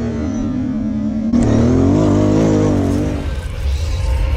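Kawasaki sport quad's engine running under the rider, getting louder about a second and a half in, with the revs wavering up and down as it is ridden through sand, then easing off near the end.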